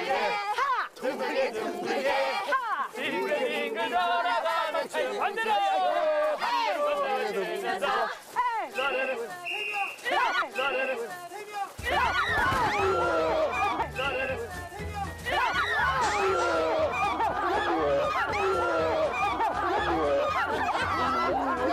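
Several people shouting and chattering at once over background music; a deeper, bass-heavy layer of the music comes in about twelve seconds in.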